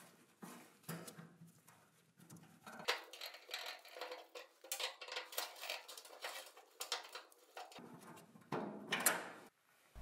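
Screwdriver working the rusty igniter screws out of a gas grill burner's bracket: faint, scattered metal clicks and scrapes, busier from about three seconds in until near the end.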